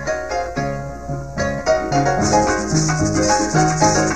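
Venezuelan llanera harp starting a new piece, plucking a quick melody over a moving bass line, with maracas joining in about two seconds in.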